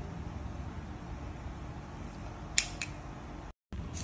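Low room tone with a faint steady hum, broken by two light, sharp clicks about two and a half seconds in, a fraction of a second apart. Near the end the sound drops out completely for a moment.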